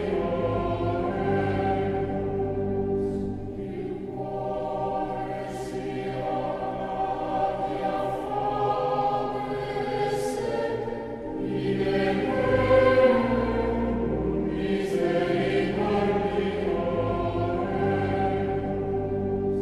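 A choir singing slow, sustained chords, the notes held for several seconds at a time.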